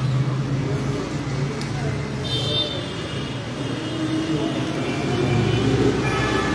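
Street traffic: a steady rumble of passing road vehicles, with a brief high tone about two seconds in.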